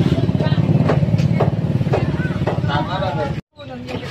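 A small engine running steadily with a low, fast-pulsing rumble; it cuts off suddenly near the end.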